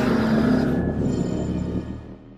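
Cinematic logo-intro music: the decaying tail of an opening boom, a wash of noise with low held tones, fading out steadily.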